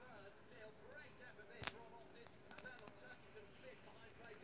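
Near silence: faint distant voices in the background, with a single faint click about one and a half seconds in.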